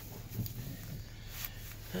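Faint steady low hum in a vehicle cabin, with a small soft knock about half a second in.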